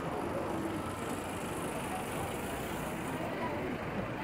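City street traffic noise, with a black cab running slowly past close by.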